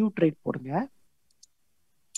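A man speaking for about the first second, then near silence broken by one faint, brief click about a second and a half in.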